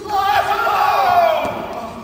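Karate kiai: one long, loud shout of about a second and a half that falls in pitch toward the end.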